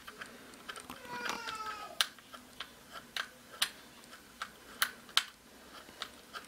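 Small irregular clicks and taps of a hex driver in a screw and the plastic gear cover of an electric RC truck as the cover is screwed back on, with a brief squeak about a second in.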